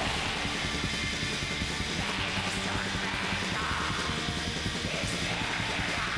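Background music playing at a steady level, with no other distinct sound.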